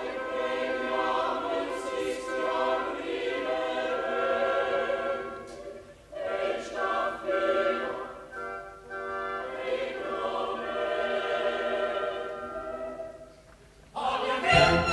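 Opera chorus singing. It comes in right after a near-silent pause, breaks off briefly about six seconds in, and dies away just before the end.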